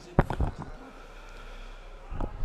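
A sharp knock close to a microphone, followed by a few quick, weaker knocks and rustles: handling noise as the lectern microphone is touched. Then only a faint steady hum.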